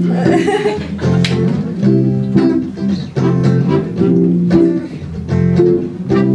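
Accordion playing a rhythmic accompaniment of short repeated chords, about two a second.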